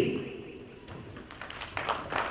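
Scattered hand claps from an audience, starting about a second in and thickening into applause.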